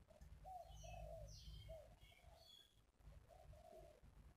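Faint bird calls: a run of short, low cooing notes in the first half and a couple more late on, with a few high chirps over them.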